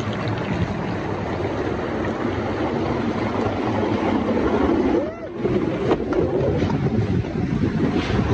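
River water rushing and splashing around a bamboo raft as it runs through white water, a steady rushing sound that dips briefly about five seconds in.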